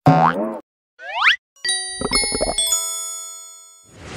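Animated logo sound sting. It opens with a cartoon boing and a quick swooping glide, then several struck chime-like notes that ring on together as a chord and fade away over about two seconds.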